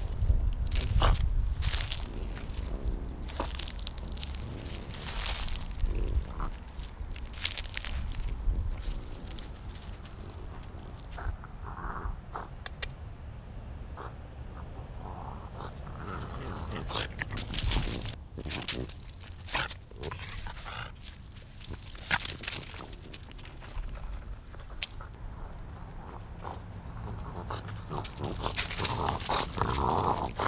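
A French bulldog playing with a ball in dry leaves and grass right by the microphone: irregular crunching and rustling of leaves, with the dog's own grunting noises.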